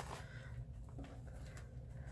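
Quiet room tone with faint handling noise as twine is pulled loose from a handmade paper journal, with one small soft sound about a second in.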